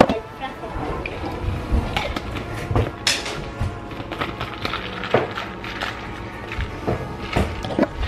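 Clicks and knocks of a NutriBullet blender cup filled with coffee and ice being handled on a counter as its blade lid is put on and twisted closed, with music underneath.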